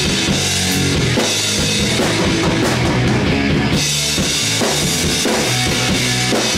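Live rock band playing loud, with electric guitar and a full drum kit (bass drum, snare and cymbals). The cymbals drop away briefly in the middle.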